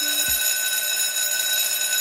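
Electric school bell ringing steadily, signalling the start of class, then cutting off.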